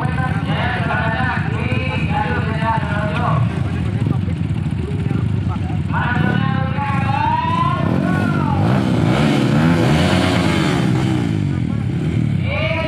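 Several Kawasaki KLX trail bikes idling together, with engines revved up and down from about eight seconds in.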